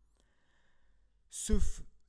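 A pause in a man's talk with only faint room noise, then, about one and a half seconds in, a short, loud, sigh-like breath from the man.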